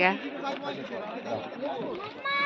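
Indistinct background chatter of several voices, with no single clear speaker.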